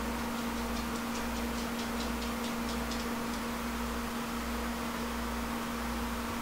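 A run of light, quick ticks, about five a second, stopping about three seconds in, over a steady low electrical hum.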